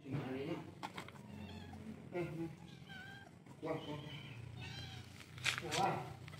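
Kittens meowing repeatedly: about seven short, high-pitched meows spaced roughly a second apart.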